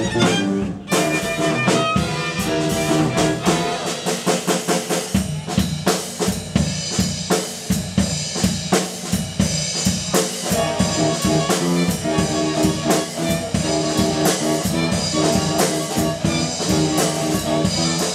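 Live band playing an instrumental arrangement: bowed violins and cello with electric guitar, electric bass and a busy drum kit, its sharp hits coming thick and fast throughout.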